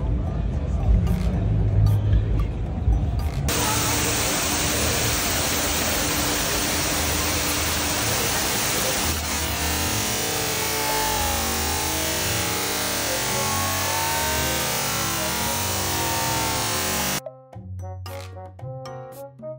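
Steady rush of an ornamental waterfall cascading down a rock face into a pool. It starts a few seconds in, after a stretch of mixed background noise, and cuts off abruptly near the end, where a few music notes begin.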